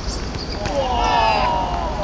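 A long shouted call, held for over a second from a little past half a second in, with a few sharp knocks of the football being kicked just before it.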